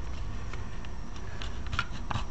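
A few faint plastic clicks from a Traxxas Slash transmitter's plastic case as its halves are pressed together, with a slightly sharper click near the end, over a steady low hum.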